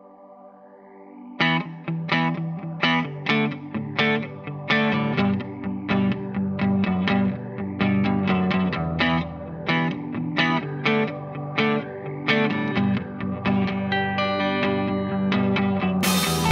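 Rock song intro: a lone electric guitar plays a riff of repeated picked notes, coming in about a second and a half in over a faint synth pad.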